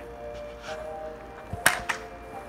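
BB rifle firing: one sharp crack about one and a half seconds in, followed a quarter second later by a smaller click, over background music.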